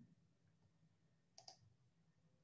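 Near silence: room tone, with two faint clicks close together about one and a half seconds in.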